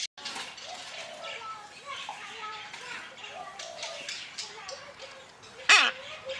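Male red-sided Eclectus parrot giving one loud, harsh squawk near the end that falls in pitch, over faint chattering sounds.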